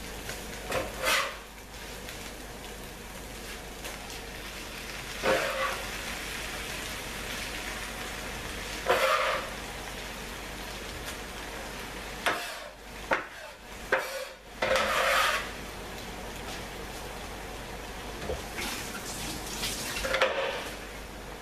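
Olives frying in tomato paste in a pan, a steady sizzle, broken by several short clatters and scrapes of utensils against the pan as chopped tomato is added, with a busier run of them a little past the middle.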